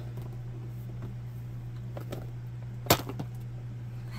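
A cardboard doll box toppling over, with a couple of faint handling clicks and then one sharp knock as it lands, about three seconds in.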